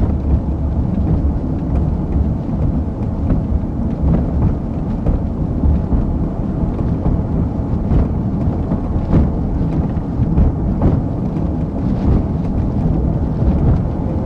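Steady low rumble of tyre and road noise from a car driving over rough, patched pavement, heard from inside the cabin, with a few short knocks.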